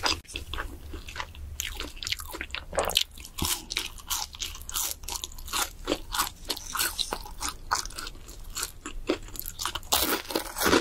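A person chewing crispy fried food close to the microphone, with a rapid run of short, crisp crunches.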